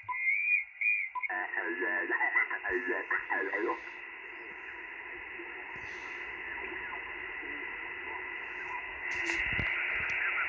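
Shortwave receive audio from an Icom IC-705's speaker on the 20 m band. For the first second a warbling, whistly signal is heard in RTTY mode. About a second in the radio switches to upper sideband, and a station's voice comes through for a couple of seconds, then gives way to steady band hiss that rises slightly near the end.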